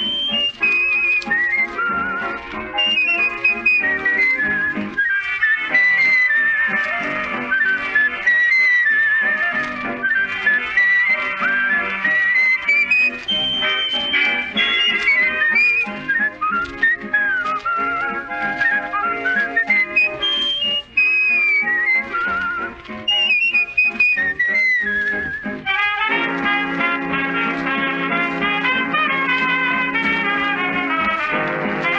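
A man whistling a melody with vibrato over a dance orchestra, in an old 1930s radio recording. About 26 seconds in, the whistling gives way to the full band with brass playing held chords.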